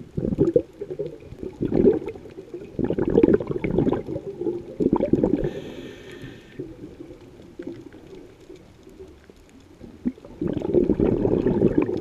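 Scuba diver's exhaled air bubbling out of the regulator underwater in irregular bursts, quieter for a few seconds in the middle and bubbling again near the end. A short hiss of the regulator on an inhale comes about halfway through.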